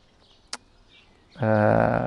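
A pause in a man's speech: a single small click about half a second in, then a held, level hesitation sound from his voice, like a drawn-out "eee", in the last half second as he searches for the next word.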